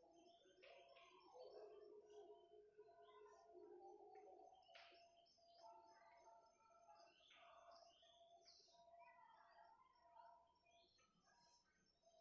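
Near silence, with faint, irregular bird chirps and short calls throughout.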